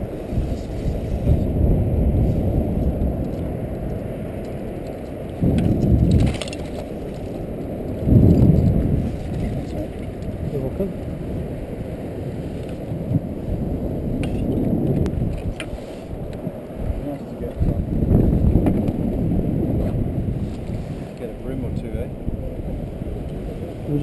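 Wind buffeting the microphone on an open boat at sea, a low rumble that rises and falls in gusts, with a few faint knocks.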